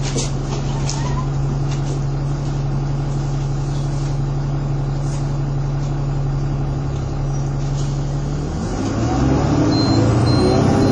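City bus diesel engine running at a steady idle, heard from inside the passenger saloon, with a few sharp clicks or rattles in the first second or two. Near the end the engine note rises as the bus pulls away.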